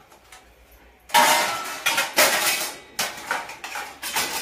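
Stainless steel plates and vessels clanking as they are set onto a metal dish rack. The first second is quiet, then comes a run of sharp metal clanks, each ringing on briefly.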